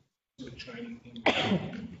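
A person coughing once, a loud sudden cough a little past the middle, heard in a large room. The sound cuts out to silence for about a third of a second at the start.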